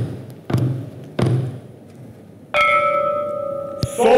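Wooden auction gavel knocked three times, about 0.7 s apart, closing the sale on the final bid. About two and a half seconds in, a clear bell-like tone rings out and holds, with a sharp click near the end.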